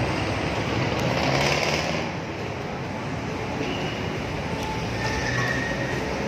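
Busy city road traffic: a steady wash of engine and tyre noise, with a brief swell of hissing noise between about one and two seconds in.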